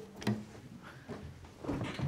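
Soft knocks and rustling of someone settling onto a piano bench with an acoustic guitar, a faint knock shortly after the start and a few more near the end.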